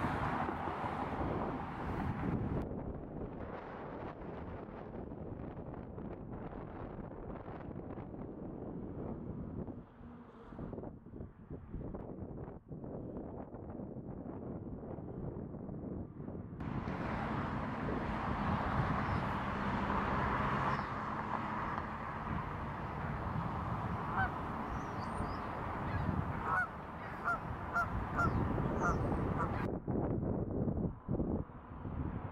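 Steady wind noise on the microphone. Near the end comes a string of short honking calls from geese.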